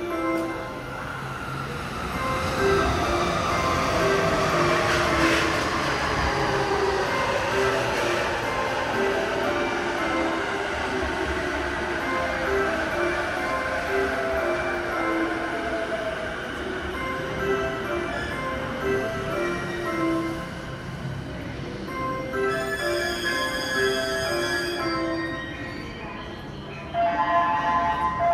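Keihin-Tōhoku Line E233-series electric train pulling in and braking to a stop, its motor whine falling steadily in pitch, with a short repeating electronic approach melody from the platform speakers playing over it. Near the end a brighter chime of several tones sounds.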